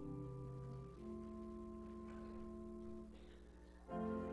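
Organ playing the introduction to a hymn: sustained chords that change about a second in, hold steadily, then fade away near the end.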